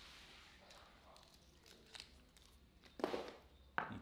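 Plastic lure packaging being handled and opened: faint crinkling and tearing, a louder rustle about three seconds in, and a sharp click shortly before the end.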